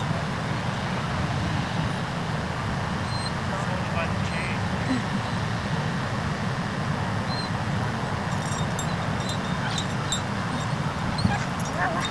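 Steady outdoor background noise with faint, distant voices and occasional faint dog barks and yips.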